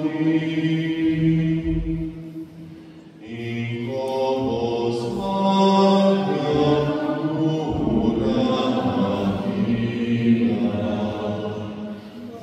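Voices singing a slow, chant-like hymn in long held notes, with a short pause about two to three seconds in before the singing resumes.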